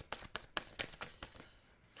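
Playing cards being handled as a card is drawn from a deck: a quick run of small clicks and taps that thins out after about a second and a half.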